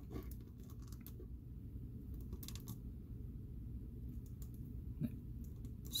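Faint, scattered clicks and small knocks of a plastic action figure being handled as its head is worked off the neck joint. A low steady hum runs underneath.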